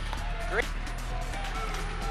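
Background music with a steady low bass, under a brief word from a hockey play-by-play commentator.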